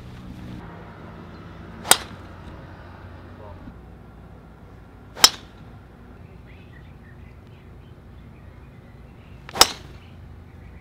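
Golf drivers striking balls off the tee: three sharp cracks, three to four seconds apart, the middle one the loudest.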